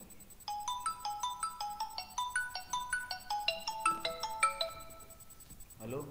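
Mobile phone ringtone playing a quick melody of short pitched notes, stopping about five seconds in as the call is answered.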